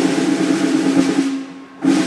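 Snare drum roll answering a call of the roll of the fallen. It runs steadily and stops about a second and a half in, and then a second short roll comes just before the end.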